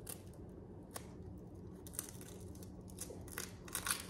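Faint clicks and small cracks of an eggshell being pried apart by fingers over a stainless steel bowl, a few scattered at first and a quick cluster near the end as the shell opens.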